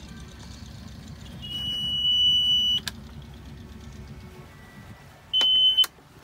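Boat engine panel's alarm buzzer sounding twice, a steady high beep of about a second and a half and then a shorter one, as the sailboat's inboard engine is shut down. The engine's low rumble stops about four seconds in.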